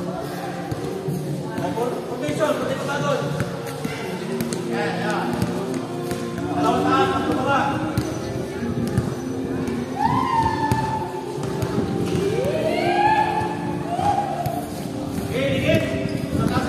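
Pickup basketball game: players shout and call out to each other, with loud rising calls about ten and thirteen seconds in. Scattered bounces of the ball and thuds on the court run underneath, over steady background music.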